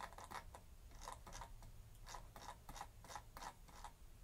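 Faint, irregular clicks, about four a second, of a computer mouse scroll wheel being turned to scroll a document.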